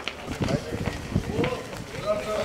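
Several men's voices talking over each other as a group walks, with footsteps on hard ground.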